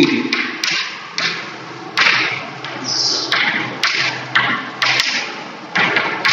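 Chalk writing on a chalkboard: a run of short taps and scratching strokes, irregularly spaced, roughly one or two a second.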